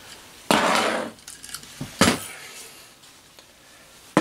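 Small elevator parts being handled and set down on a mat: a short burst of rattling about half a second in, then a sharp clink about two seconds in.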